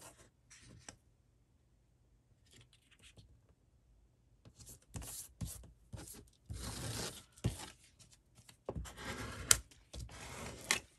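Paper being handled and a plastic scraper rubbed over a freshly glued paper picture on a cutting mat to press it flat: a few short scratchy strokes starting about halfway through, the longest about a second.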